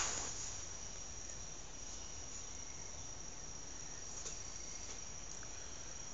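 Steady high-pitched chorus of insects from outside, one unbroken tone over a faint low background noise. A brief rustle at the very start as the camera settles.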